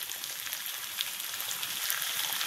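Seasoned flanken-cut beef short ribs frying in olive oil in a nonstick skillet: a steady sizzling hiss with a few faint crackles, as the ribs cook on their first side before being flipped.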